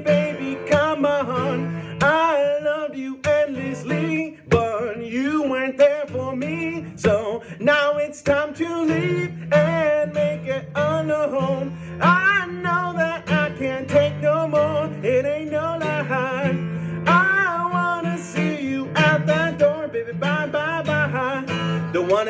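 A man singing a pop song to his own strummed acoustic guitar, the voice over a steady, rhythmic strum.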